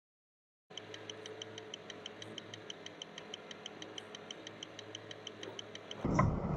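Faint sound inside a semi-truck cab at highway speed: a low steady drone with a quick, even light ticking. It starts under a second in.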